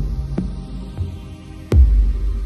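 Background electronic music with a deep, throbbing bass. A heavy bass hit lands near the end, with lighter hits before it.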